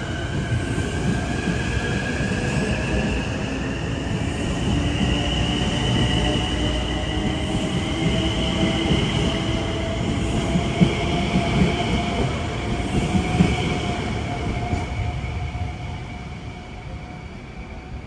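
LIRR M9 electric multiple-unit train accelerating out of the station, its traction motors whining in several tones that climb slowly in pitch over the rumble of steel wheels on rail. A few sharp wheel clicks come about two-thirds of the way through, and the sound fades over the last few seconds as the train draws away.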